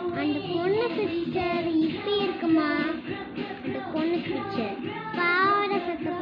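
A child's voice singing a song without pause, the pitch gliding up and down, with a held, wavering note about five seconds in.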